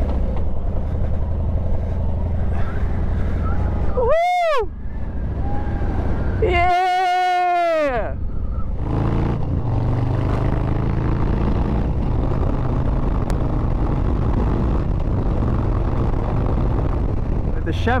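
Harley-Davidson Street Bob 114's Milwaukee-Eight V-twin engine running steadily as the motorcycle is ridden. Around 4 seconds in and again around 7 seconds in, two short high-pitched sounds rise and fall in pitch while the engine sound briefly drops out.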